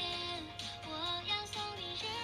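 Background music: a song with a high female singing voice moving between held notes.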